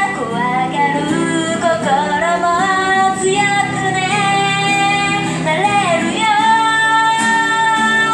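A female vocalist sings a pop song live through a small amplified PA, accompanied by acoustic guitar. She holds a long steady note from about six seconds in.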